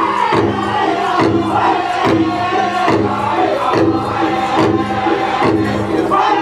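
Northern-style powwow drum group singing a contest song for women's traditional dancers: high, strained voices in falling phrases over a steady beat on a shared big drum.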